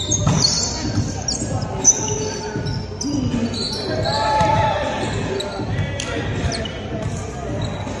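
Indoor volleyball rally in an echoing gym: the ball is struck with sharp smacks, the loudest about two seconds in and another near six seconds, while shoes squeak on the hardwood floor and players call out.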